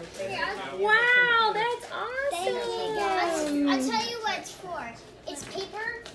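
Children's excited voices exclaiming and chattering over an opened present, including a long cry that falls in pitch about two and a half seconds in.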